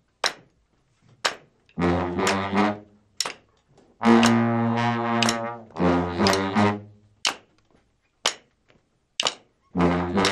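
Brass band of sousaphone, trombones, trumpet and saxophones opening a tune in stop-time: short punchy ensemble chords and one long held chord about four to six seconds in, separated by silent gaps. Sharp drum and cymbal hits land in the gaps, about once a second near the end.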